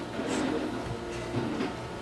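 Quiet handling sounds: a few soft knocks and rubs as the plywood frame of a small home-built CNC mill is shifted and held on a wooden workbench.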